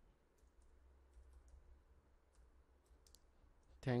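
Faint, irregular clicks of computer keyboard keys as a short word is typed, over a low steady hum.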